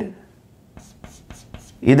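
Chalk writing on a blackboard: several short, faint strokes as a word is written, with a man's voice starting again near the end.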